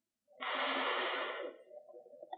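A man's breath drawn in, about a second long, just before speaking.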